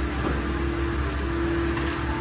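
Steady mechanical drone with one constant low tone and a low hum beneath, unchanging throughout.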